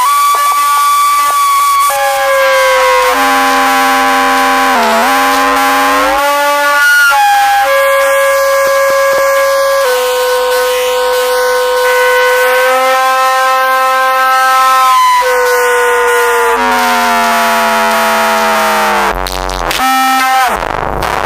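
Instrumental electronic music: a synthesizer holds long, steady notes that step to a new pitch every one to three seconds. There is a short dip in pitch about five seconds in and a quick run of changing notes near the end.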